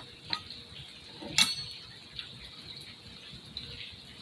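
Small clicks and taps of metal camp cookware being handled, with one sharp, ringing metal clink about a second and a half in, over a faint steady hiss.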